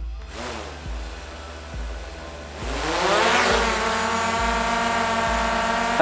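DJI Air 2S quadcopter's motors spinning up for takeoff: a rushing swell, then a propeller whine that rises in pitch about three seconds in and holds steady. Background music with a steady beat plays underneath.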